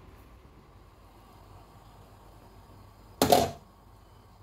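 A faint steady background from a covered pot of red beans on the boil, then one short, loud clatter about three seconds in as the glass pot lid is handled.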